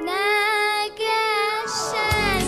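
A young girl singing solo into a microphone over light keyboard backing music, her held notes wavering with vibrato and breaking off briefly just before a second in.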